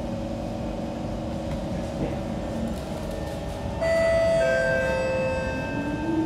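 A Kawasaki C151 MRT train stands at the platform with its equipment humming steadily. About four seconds in, the door-closing chime starts suddenly: a set of steady tones that shifts to a different pitch partway, warning that the doors are about to shut.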